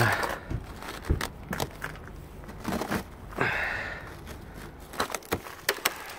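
Gloved fingers pressing into and breaking a crust of ice with snow frozen inside it on a car's window: scattered crunches and crackles, a longer crunch about three and a half seconds in, and a quick run of sharp cracks near the end.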